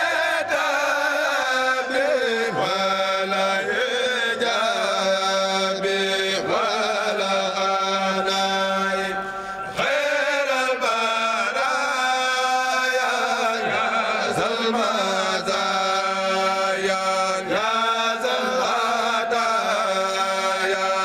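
A male group chanting a khassida in unison into microphones, unaccompanied, with long held and sliding notes; the chant dips briefly a little before halfway and picks up again.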